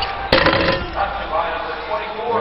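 A single sharp slam about a third of a second in as the basketball is dunked through the rim, followed by arena crowd noise.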